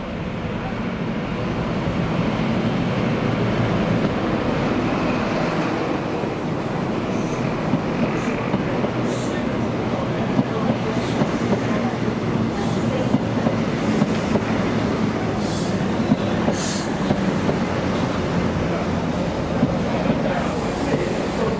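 Intercity 125 (HST) running past: the diesel power car's engine gives a steady low drone that builds over the first few seconds, then the coaches roll by with scattered sharp clicks from the wheels on the rails.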